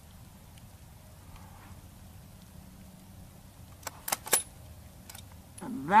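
Sharp metallic clicks from the bolt-action 6mm Creedmoor rifle: three in quick succession about four seconds in, then a fainter one about a second later.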